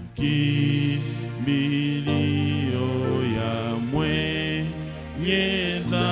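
A man singing a slow Swahili hymn into a microphone, in long held notes that slide from one pitch to the next.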